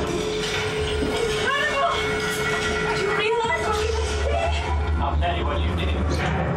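Simulator ride soundtrack sound effects: a steady hum with short swooping tones, over a deep rumble that swells about four seconds in as the craft returns to its dock.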